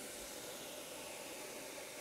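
Granular dried herb material pouring in a steady stream from a stainless steel chute into a steel hopper, a soft, even hiss.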